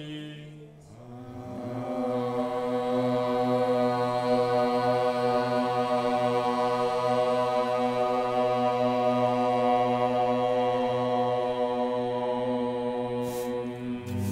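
A man chanting a mantra in yoga practice: one long note held on a steady pitch, starting about a second in and holding until near the end.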